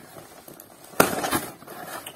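Plastic packaging being handled as it comes out of a cardboard box: one sharp snap about halfway through, then a short crackle.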